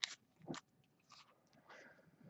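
Faint handling of a stack of chrome baseball cards: a few soft clicks and rustles as the cards are squared up and shifted in the hands, the clearest click about half a second in.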